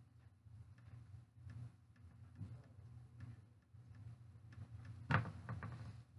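Quiet handling noise from hands working crochet hair extensions on a hanger: faint, scattered ticks and rustles over a steady low hum, with one sharper knock about five seconds in.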